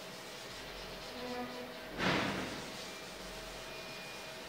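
A felt whiteboard eraser rubbing across the board: one brief swish about two seconds in, over a faint steady hum.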